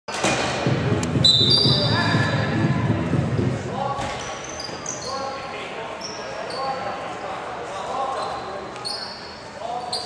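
Box lacrosse play in an echoing arena: shoes squeaking in short high chirps on the floor and a few sharp knocks of ball and sticks, under players' and spectators' shouting voices.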